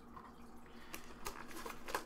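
Quiet handling noise: a few faint clicks and taps from hands moving things on a table, mostly in the second half.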